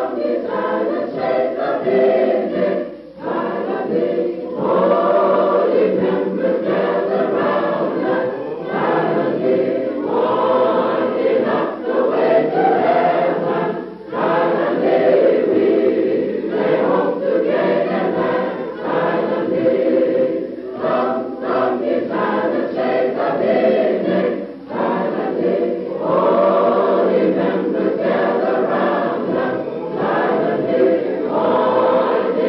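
A group of voices singing together, phrase after phrase, with brief breaks between phrases.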